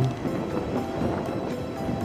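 Steady wind and engine noise from riding a motor scooter, with faint background music over it.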